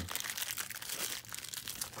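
Small plastic bag crinkling as hands open it and pull out a small ball bearing, in a continuous run of fine crackles.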